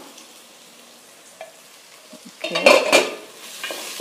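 Diced carrot, potato and onion frying in oil in a stainless steel pot just uncovered: a faint sizzle, then a loud scrape and clatter of a spoon stirring against the pot about two and a half seconds in. After that the sizzle grows louder.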